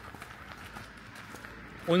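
Footsteps on a gravel path at a walking pace, faint and even.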